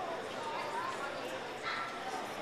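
A dog yipping, with a sharp yelp near the end, over the hubbub of people talking.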